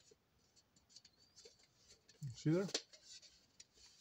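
Fingers and fingernails rubbing and pressing on a thin sheet-metal phonograph horn to work out a dent: faint scratching with light scattered ticks.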